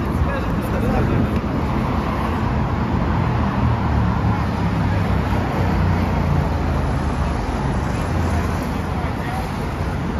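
Busy city-street ambience: steady road traffic along a wide avenue with passers-by talking nearby.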